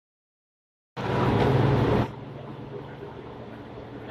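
Silence for about the first second, then a motor starts up loud for about a second and drops to a steady, lower running hum.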